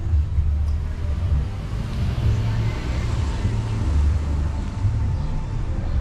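A car driving past close by on the street; its tyre and engine noise swells in the middle and fades, over a steady low rumble.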